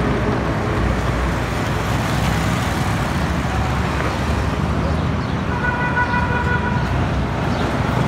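Steady road-traffic noise as a motorcycle rides by. A vehicle horn is held for about a second and a half near the end.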